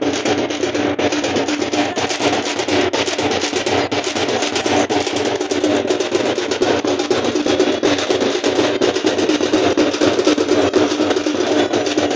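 Several stick-beaten drums with white plastic heads played together in a fast, unbroken rhythm. A steady held tone sounds underneath the drumming.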